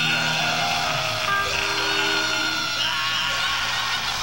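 A heavy metal band's live practice-room demo recording: distorted electric guitar holding sustained notes whose pitch bends and slides. The sound is lo-fi, taped on a home video recorder.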